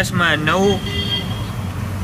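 A man speaking, then about a second of pause in which only a steady low background hum is left.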